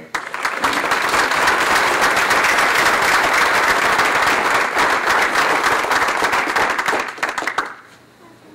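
Audience applauding: a dense round of clapping that dies away near the end.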